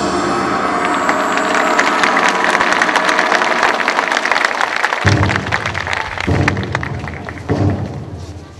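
Audience applauding as a traditional Korean dance piece ends. A deeper, intermittent sound joins about five seconds in.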